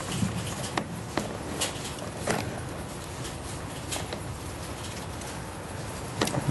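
Intermittent light rustles and clicks of hands searching through the bedding of a rabbit nest box to count the newborn kits.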